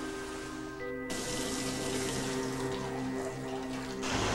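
Water spraying and running, the hiss growing suddenly louder about a second in, over soft held music chords.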